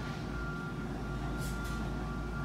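Steady low room hum with a faint, thin high whine over it, and two soft clicks about one and a half seconds in.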